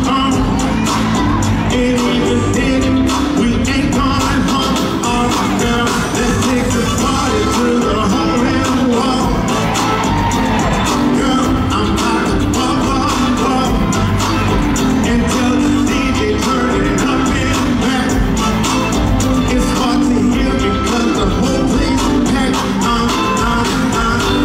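A male singer's voice through a handheld microphone and PA, singing a Southern soul song live over loud amplified backing music with a steady beat.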